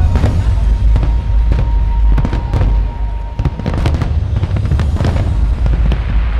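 Fireworks display: shells bursting in a rapid, irregular run of bangs and crackles over a continuous deep rumble.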